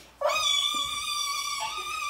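A single long, high-pitched call that swoops up at its start and then holds one steady pitch for nearly two seconds.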